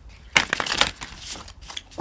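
Tarot cards being shuffled by hand: a sharp snap about a third of a second in, then about a second of dense rustling, fading toward the end.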